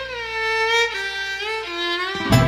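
Soundtrack music: a slow solo violin melody with slides and vibrato over a low held drone, stepping down in pitch near the end as the drone drops away.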